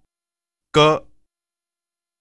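Speech only: a single Hindi vowel, 'au', spoken once about three-quarters of a second in.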